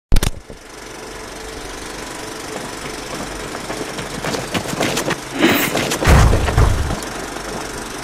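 Intro sound effects: a sharp hit, then a steady mechanical rattle that grows louder, broken by sharp clicks about four seconds in and two deep booms near the end.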